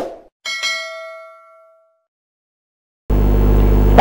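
Subscribe-button animation sound effect: a couple of quick clicks, then a single bright notification-bell ding that rings and fades away over about a second and a half. Near the end a steady low hum starts abruptly.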